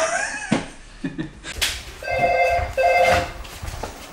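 A door-entry intercom rings twice, each time with a short, steady electronic tone about half a second long, in the middle of the stretch.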